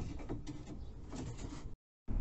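Faint knocks and scraping of a wooden trim board being handled and fitted against a motorhome's wall panelling, cutting off suddenly near the end.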